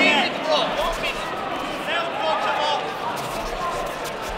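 Voices calling out from around the mat in a reverberant sports hall, with short squeaks of fighters' shoes on the mat during a kickboxing bout.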